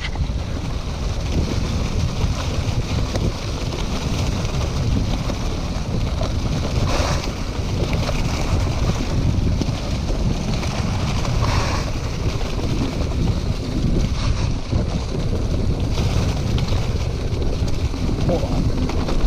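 Steady wind noise buffeting a GoPro's built-in microphone on a mountain bike riding fast down a leaf-covered dirt trail, with a deep rumble from the bike over the ground. There are a couple of brief louder crackles about seven and eleven seconds in.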